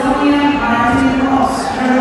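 A man's voice calling out in long, drawn-out tones in a large, echoing hall.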